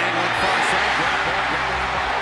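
A stadium crowd roaring and building as a deep pass is in the air, over background music with a steady low bass line.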